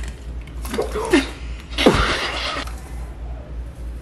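Two short wordless vocal outbursts, the second louder, each sliding down in pitch with a breathy edge.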